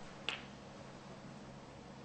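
A single sharp click of snooker balls being struck, about a third of a second in, then a hushed arena.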